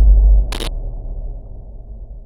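Low rumbling tail of a deep cinematic boom dying away. About half a second in, a short camera-shutter click sound effect sounds once.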